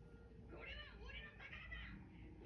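Faint, high-pitched voice from the anime's soundtrack, a few short cries that rise and fall in pitch, playing quietly.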